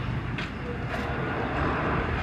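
Steady traffic noise from a nearby road: a continuous rushing noise with a low hum underneath.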